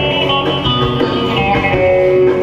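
Bağlama played over a steady bass and rhythm backing in an instrumental passage of a Turkish folk song.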